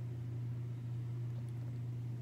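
A steady low hum, even and unchanging: background room tone.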